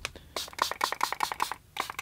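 Spray bottle spritzing water over dry watercolour pans to wet and activate the paint: a quick run of rapid spritzing clicks and hisses, a short pause, then a few more near the end.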